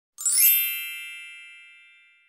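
A bright chime sound effect: a quick upward sparkle of bell-like tones starting a moment in, then several ringing tones that fade slowly away.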